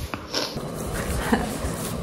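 Latex glove being pulled onto a hand: rubbery rustling and handling noise with a few soft knocks.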